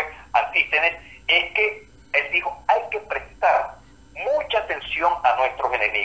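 Speech over a telephone line: a voice talking in short phrases with brief pauses, sounding thin and narrow.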